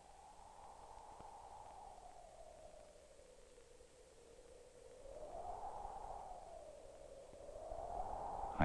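A faint, hollow whooshing like wind howling, its pitch slowly rising and falling, swelling about five seconds in.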